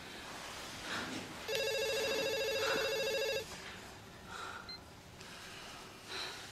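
A telephone ringing once: a single warbling ring about two seconds long, starting about a second and a half in.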